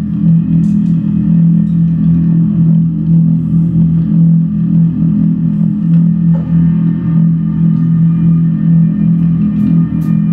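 Electric bass guitar played through effects, holding a dense, steady low drone, with a few faint light taps from the drum kit.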